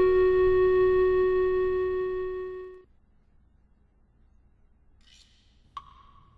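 A held organ chord of film music that cuts off suddenly about three seconds in. Near the end comes a single sharp plop, a stone dropping into the pond.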